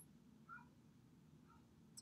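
Near silence: room tone with a steady low hum and a couple of faint, brief chirps.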